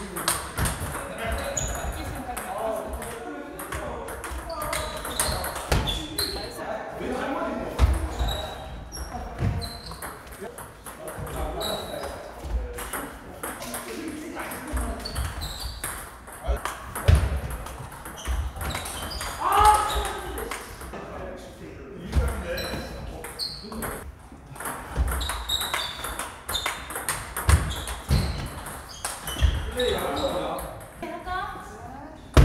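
Table tennis rallies: the ball ticking sharply off the paddles and the table at irregular intervals, with voices chattering in the background of a large, echoing hall.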